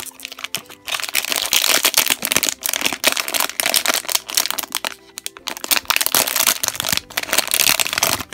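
Metallic foil blind-bag pouch crinkling and rustling as it is handled, torn and opened by hand, with a brief lull about five seconds in.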